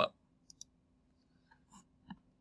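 Two quick, faint computer mouse clicks, close together, about half a second in, then a few fainter soft clicks near the end.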